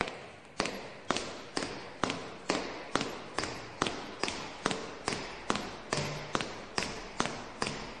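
A steady, even rhythm of sharp taps, a little over two a second, each dying away quickly.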